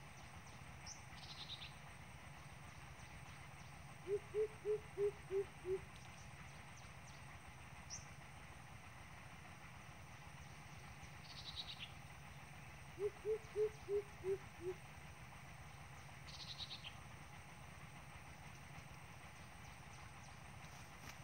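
Coucal's deep hooting call: two runs of about six low hoots, roughly three a second, a few seconds in and again past the middle. Faint thin, high bird chirps come in between.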